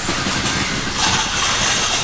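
Steady mechanical noise, like a motor or engine running, with no distinct events.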